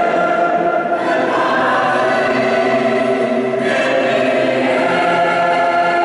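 Mixed choir singing long held chords with orchestral accompaniment, the harmony changing to a new chord about three and a half seconds in.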